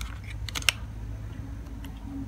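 Handling of a handheld MS2108 clamp meter: a few sharp plastic clicks a little over half a second in, over a steady low hum.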